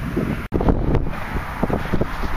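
Wind buffeting the microphone, a loud, steady rumble, broken by a sudden brief dropout about half a second in.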